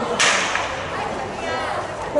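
A single sharp crack of a starting pistol firing for the start of a sprint race, about a fifth of a second in, its echo dying away over about half a second.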